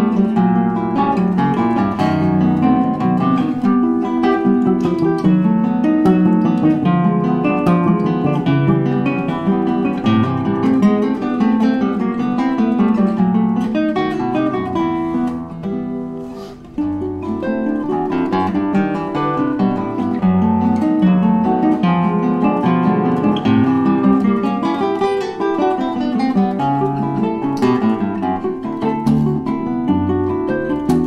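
A duo of nylon-string classical guitars playing a choro: dense plucked melody notes over a moving bass line. About sixteen seconds in the playing briefly drops in volume, then picks up again to full level.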